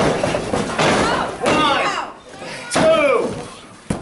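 Wrestling spectators shouting, with a thud from the ring at the start; just before four seconds in, one sharp smack as the referee's hand slaps the mat to start a pin count.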